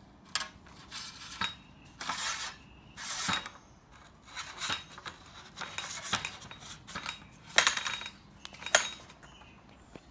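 A metal drive shaft being slid and worked back into an aluminium line-trimmer shaft tube: irregular metallic scraping and clinking in short bursts, with the sharpest clinks near the end.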